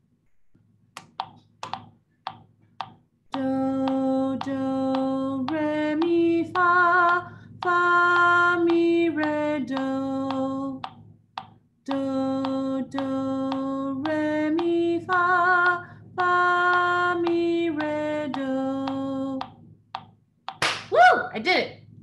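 A metronome clicking the beat, alone for the first three seconds. A woman then sings a short solfège exercise in long held notes, stepping up from C to F and back down to C, and sings it through twice.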